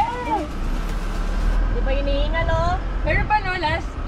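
A person's voice speaking in short bursts over a steady low rumble of wind and a moving vehicle.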